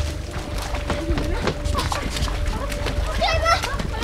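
Women's shouts and a high squeal over background music, with water splashing near the end.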